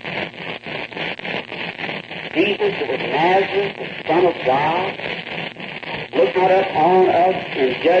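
Speech only: a man praying aloud in a pleading voice on an old, hissy recording with a thin, radio-like sound.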